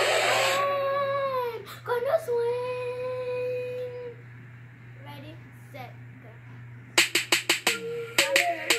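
A girl's voice holding long sung notes, the first sliding down and the second held steady for about two seconds, after music cuts off. Near the end a song with a sharp, clicking beat starts.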